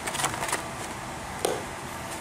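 Handling of a phone's cardboard gift box and its tray insert: a few light taps and scrapes, with one sharper knock about a second and a half in.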